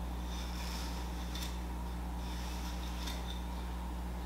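Steady low hum of room tone, with a couple of faint strokes of a bristle hairbrush being drawn back through the hair.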